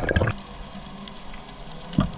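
Underwater ambience picked up by a camera below the surface: a low, steady wash of water with faint scattered ticks, and a single sharp click at the very end.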